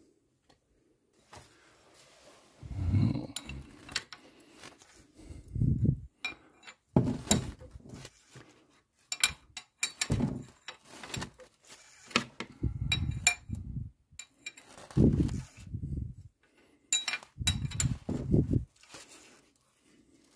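A ring spanner on the crankshaft sprocket bolt of a VW petrol engine, clinking and knocking as the crankshaft is turned over by hand in about eight separate pulls. Each pull brings a heavier knock or rub along with sharp metal clicks as the spanner is worked and reset.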